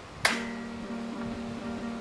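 A single sharp chop about a quarter second in: a 13th-century riding sword's steel blade striking a wooden hammer handle along the grain. It is a light hit, but it splits the wood deeply. Acoustic guitar background music plays throughout.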